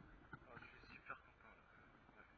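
Near silence, with a few faint, indistinct murmurs of a voice.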